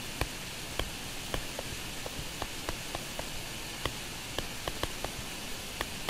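Steady recording hiss with light, scattered ticks from a stylus tapping and writing on a tablet screen as handwritten notes go onto the slide.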